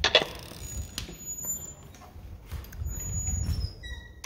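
Heavy old wooden street door being pushed open and walked through: a sharp knock right at the start, a low rumble a few seconds in, and thin high squeaks stepping downward near the end.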